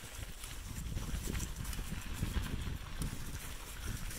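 Wind buffeting the microphone in irregular low rumbles while riding a bicycle, over a quick run of small clicks and rattles from the bike rolling on a rough trail.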